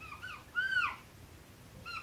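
Dry-erase marker squeaking on a whiteboard as a symbol is written. There are a few short, high squeals. The loudest one, just before a second in, rises and falls in pitch, and another brief squeak comes near the end.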